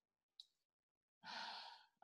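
Near silence, then a short, soft breathy exhale like a sigh into a call microphone near the end.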